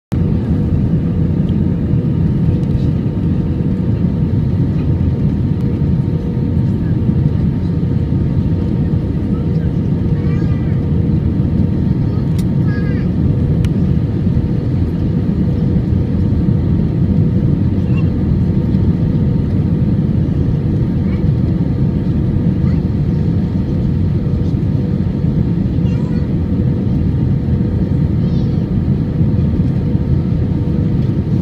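Cabin noise of an Airbus A319-111 on final approach, heard from a seat over the wing: a steady rush of engine and airflow noise with a constant hum running through it.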